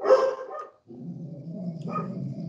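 Dogs barking and growling: one loud bark at the start, then a longer, lower growl.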